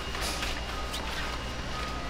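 Steady outdoor background noise with a low hum and faint music, no distinct events.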